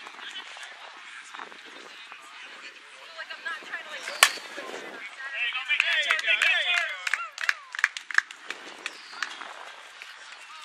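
A softball bat hitting a pitched softball once with a sharp crack about four seconds in. Players then shout and cheer loudly as the ball goes through for a single to left field.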